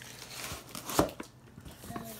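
Handling noise: light rustling with a few knocks, the loudest a single sharp knock about a second in.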